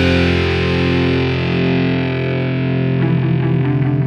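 Rock music: a distorted electric guitar chord held and slowly fading, with new notes picked in about three seconds in.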